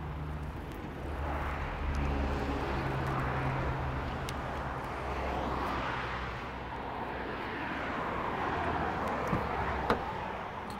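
Steady rumble of vehicle traffic, with a low engine hum under it, slowly swelling and easing. A couple of faint clicks come near the end.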